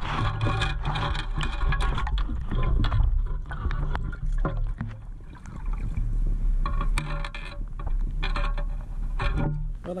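Water sloshing and gravel and debris rattling against the wire mesh of a metal-detecting sand scoop as it is sifted, with many sharp clicks; background music plays along.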